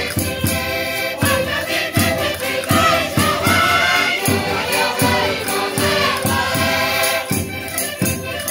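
Minho folk music: a group of women singing loudly over concertinas, with castanets clacking and a bass drum beating steadily about twice a second.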